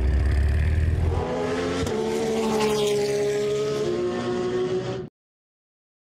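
An engine running steadily: a deep rumble for about the first second, then an even hum whose pitch sags slightly. It cuts off abruptly about five seconds in.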